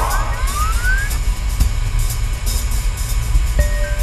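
Upbeat game background music with a heavy bass beat. A rising sweep sound effect climbs in pitch over the first second, and a new held note enters near the end.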